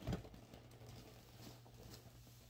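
Hands handling a cardboard gift box and its packaging: a soft knock just after the start, then faint light rustling and ticking.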